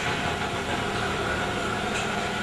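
Steady hiss with a faint low hum and no distinct events: the background noise of the room and recording.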